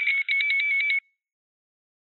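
Short electronic sound logo for an end card: a high, buzzy beeping tone pulsing about eight times a second for about a second, with a brief break just after it starts.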